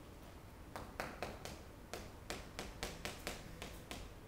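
Chalk writing on a chalkboard: a quick, uneven run of sharp taps and short scrapes as numbers are written, starting about a second in.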